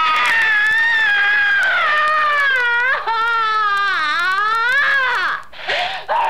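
A high-pitched human voice wailing in long, drawn-out cries with no instruments. The pitch sinks slowly, then quavers rapidly in the later cries, with a short break near the end.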